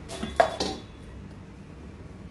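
Stainless steel bowls clinking and knocking together several times in quick succession in the first second, with a brief metallic ring.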